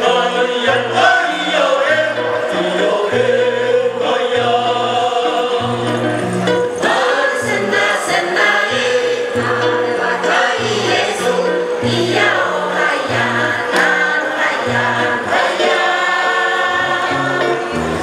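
A women's choir singing a traditional Paiwan chant together, over a steady repeating low accompaniment from electric guitar and hand drums.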